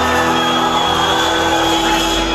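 Live rock band playing, with long held notes sustained through.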